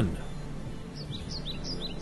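A small bird chirping in the background: about eight short, high falling chirps in quick pairs through the second second.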